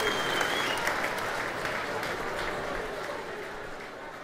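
Live audience applauding, with a shrill sustained whistle in the first second, the whole sound fading steadily down as the recording ends.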